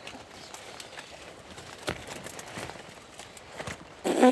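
Footsteps and leaf rustling as a person wades through dense, wet arum lily plants, with scattered small snaps and a sharper crack about two seconds in, over a steady hiss.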